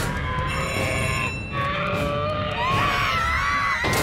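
Cartoon background music: a melody that bends up and down over a dense low part, with no speech.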